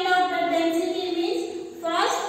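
A voice in drawn-out, sing-song speech, its vowels held long at a steady pitch.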